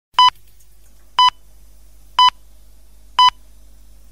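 Radio hourly time signal: four short, identical high beeps, one a second, counting down to the top of the hour, over a faint low hum.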